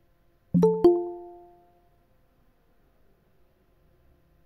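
Google Meet notification chime: two quick notes, the second higher, ringing out over about a second, as a new participant is admitted to the meeting.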